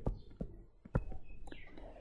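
Stylus tapping on a tablet screen as handwriting goes on, about half a dozen sharp clicks at irregular spacing, the loudest near the start and about a second in.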